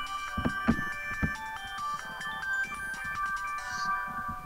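Mobile phone ringtone playing a simple electronic melody of plain, stepped tones, with a few low thumps in the first second and a half.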